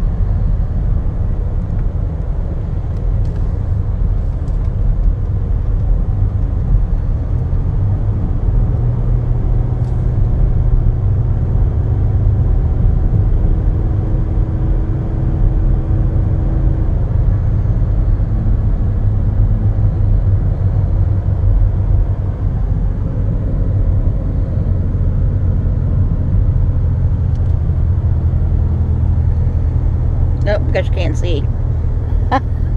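Steady low rumble of driving noise, engine and tyres on the road, heard from inside a van's cabin while it cruises along.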